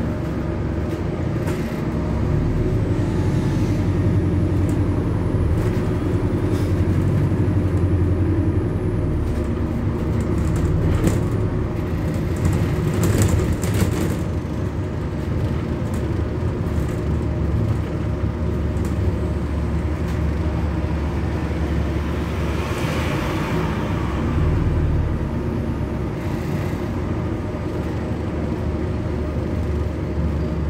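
Inside a moving London bus: steady drivetrain hum and road noise, with scattered rattles and clicks and a short hiss a little past two-thirds of the way through.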